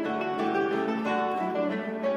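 A classical guitar quartet playing: four nylon-string classical guitars plucking interwoven notes and chords in a classical piece.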